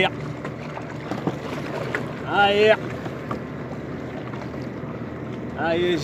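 A man's voice calls out a short drawn-out word twice, about two and a half seconds in and again at the end. Under it is steady wind and sea noise with a faint low hum.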